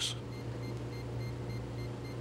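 Soft electronic beeps repeating at an even, quick pace over a steady low hum.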